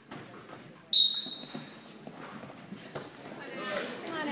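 Referee's whistle: one short, sharp blast about a second in that rings out in the gym, sounding the start of wrestling from the referee's position. Spectators' voices follow and grow louder near the end as the wrestlers start moving.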